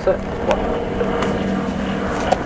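Motorcycle engine idling steadily, with a couple of faint light clicks.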